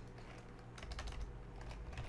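Computer keyboard being typed on: a run of irregular key clicks.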